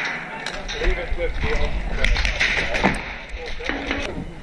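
Indistinct voices over steady rustling movement noise, with a few sharp clicks.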